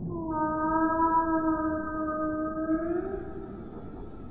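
Humpback whale song: one long steady call with a clear pitch, lasting about three seconds and rising slightly at its end, over a low background rumble.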